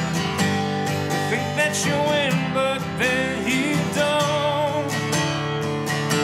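Steel-string acoustic guitar playing an instrumental passage: strummed chords, with a melody of notes that bend and waver in pitch over them.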